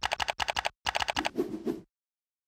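Keyboard typing sound effect: a fast, even run of keystrokes, about ten a second, with a brief break just before the midpoint and a lower-pitched clatter over the last half second, matching text being typed out letter by letter.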